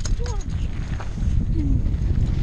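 Mountain bike rolling fast down a dirt trail: a rough, steady low rumble of tyres and wind on the camera microphone, with a few sharp knocks and rattles as the bike hits bumps.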